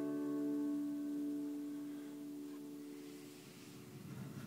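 Acoustic guitar's last chord ringing out and slowly fading away at the end of the song.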